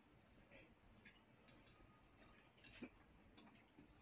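Near silence, with a few faint, scattered clicks of spoon and fork against cups and dishes during eating.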